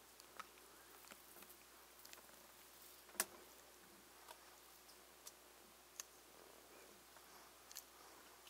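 Near silence: a faint hiss with a handful of small, scattered clicks, the loudest about three seconds in.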